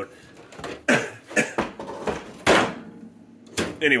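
Clunks and rattles from a dishwasher drawer and its wire dish rack being handled and pulled out, with four sharp knocks spread about a second apart.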